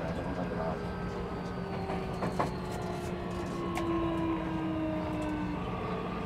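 Running sound inside a Keio 1000 series electric train: a steady rumble of wheels on rail under the whine of the inverter-driven motors, with one tone gliding slowly down in pitch over several seconds. A couple of short clicks come from the running gear.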